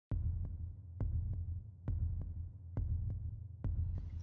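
Background music bed made of a low, throbbing pulse: a double beat like a heartbeat, about once every second, over a steady low hum.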